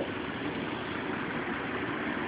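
Steady background room noise, an even hum and hiss with no distinct events.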